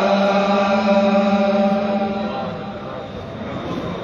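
Voices chanting in unison, holding one long final note that fades out a little past halfway, leaving quieter room sound.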